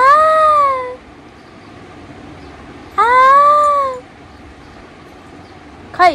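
A woman's playful, high-pitched vocalising: drawn-out wordless calls of about a second each, the pitch rising then falling, once at the start and again about three seconds in, then a short falling call at the end.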